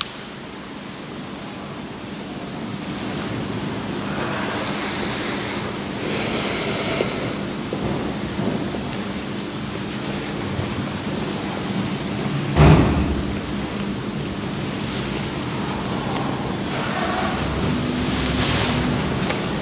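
A steady rushing, rustling noise with a faint low hum beneath it, slowly growing louder, and one sharp thump about two-thirds of the way through.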